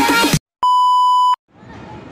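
Intro music cuts off, then a single electronic beep sounds: one steady high tone lasting under a second, starting and stopping sharply. Faint outdoor background noise fades in near the end.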